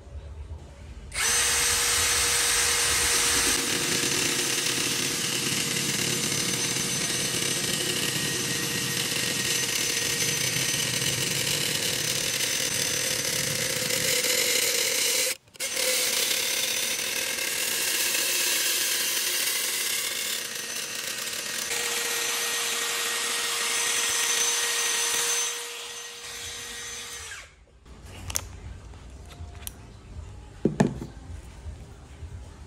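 Cordless drill spinning a wooden stick through a blade-fitted dowel-making jig, with a steady motor whine over the rasp of the cutter shaving the wood round. It runs for about fourteen seconds, breaks off for a split second, runs for about ten more, then goes quieter for a couple of seconds before stopping near the end.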